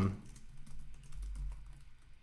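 Typing on a computer keyboard: a quick, light run of keystrokes.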